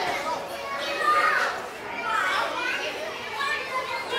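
Children's voices, high-pitched and continuous, as of children talking and calling out while they play.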